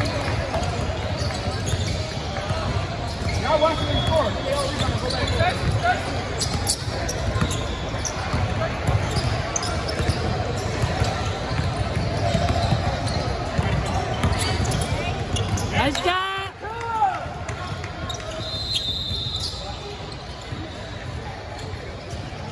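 Basketballs bouncing on a hardwood gym floor among indistinct voices, echoing in a large gymnasium, with many short sharp knocks throughout.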